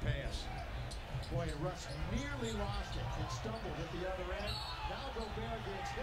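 Basketball game sound: a basketball bouncing on a hardwood court amid steady arena crowd noise and indistinct voices.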